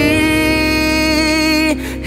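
Pop ballad: a male voice holds one long sung note over the band, breaking off about three-quarters of the way through, after which the music dips briefly.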